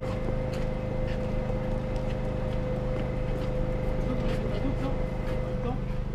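A machine's engine running steadily, a low hum with a steady higher whine that cuts out near the end, and scattered light knocks and clicks.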